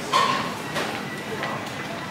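A short vocal sound just after the start, then steady outdoor street background noise with voices.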